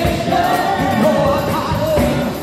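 A live band plays with a woman singing lead. She holds a long, wavering note over drums, percussion, bass, electric guitar and keyboards.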